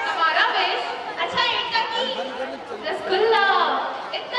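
A woman's voice over a microphone and loudspeaker, with crowd chatter behind it.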